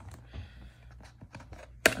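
Handling noise as a small plastic Apres X-Lite nail-curing lamp is lifted out of its moulded slot in a kit case: soft scrapes and light clicks, with one sharp click near the end.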